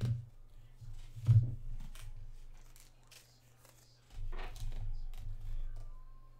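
Baseball trading cards being handled and slid through a stack by hand, with a few sharp snaps, the loudest about a second in, and a stretch of rustling about four seconds in.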